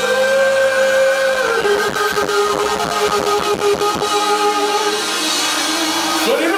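Live pop-rock band music: a long held note that steps down to a lower pitch after about a second and a half and is sustained for the rest, with drum strikes underneath.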